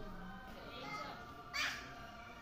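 A young child gives one short, loud, harsh shriek about one and a half seconds in, over steady background music.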